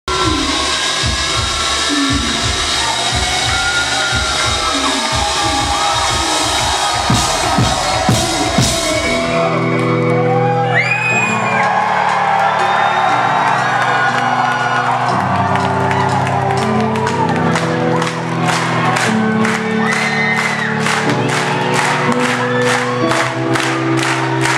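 Live concert: a crowd cheering and whooping over a low pulsing beat. About nine seconds in, sustained synth chords start, changing every second or two, with whistles from the crowd. Later a steady run of sharp hits, a few a second, joins the music.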